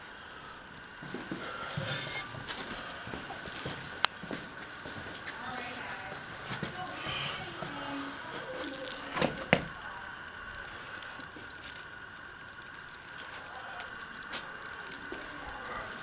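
Footsteps and handling noise on a gritty, debris-covered floor, with a few sharp knocks: one about four seconds in and two close together around nine seconds in. A faint steady high hum runs underneath.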